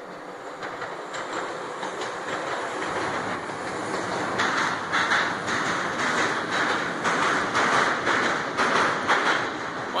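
Class 170 diesel multiple unit passing over a steel swing bridge, growing steadily louder as it approaches and goes by. From about four seconds in, a regular clatter of wheels over rail joints, about one and a half beats a second.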